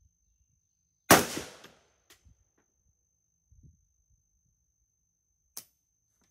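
A single rifle shot from a Hungarian AK-63DS in 7.62×39mm: one sharp crack about a second in that rings out and fades over about half a second. A much fainter sharp click follows near the end.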